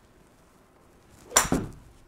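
Golf utility (hybrid) club swung and striking a ball off a hitting mat: a short swish, then one sharp, loud strike about 1.4 seconds in, followed a split second later by a second smaller knock as the ball hits the simulator screen. The contact is fat (뒷땅): the club catches the mat behind the ball before striking it.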